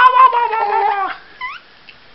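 Baby's high-pitched laughing squeal: one long note falling slowly in pitch for about a second, then two short rising squeaks.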